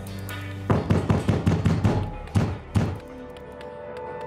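Heavy hammering on a front door: a rapid, uneven run of loud thuds lasting about two seconds, starting just under a second in, over tense background music.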